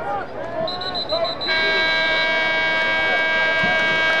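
Stadium scoreboard horn sounding the end of the third quarter: a few quick high beeps, then one long steady blast of nearly three seconds. Crowd chatter runs underneath.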